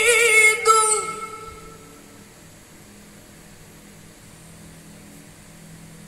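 A young woman's melodic Quran recitation (tilawah), ending a phrase on a held, wavering note about a second in and fading into the hall's reverberation. A pause follows with only a faint steady hum.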